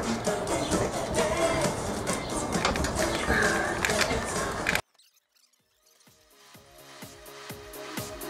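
Indistinct voices and general noise for about five seconds, cut off abruptly. After about a second of silence, electronic music with a steady beat fades in.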